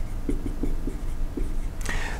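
Dry-erase marker writing on a whiteboard: a series of short, faint strokes as an equation is written out.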